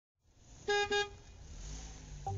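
A vehicle horn sounding two short honks in quick succession, a double toot, about two-thirds of a second in, over a low rumble that fades in and builds.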